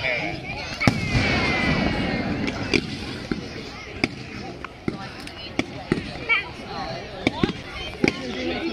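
Fireworks bursting in the sky, a run of sharp bangs and crackles at irregular spacing, about one or two a second, the loudest about a second in.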